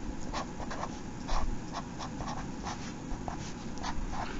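Sharpie marker writing on paper: a string of short, irregular scratchy strokes, several a second, as letters and symbols are drawn.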